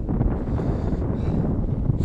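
Wind buffeting the microphone: a steady, ragged low rumble.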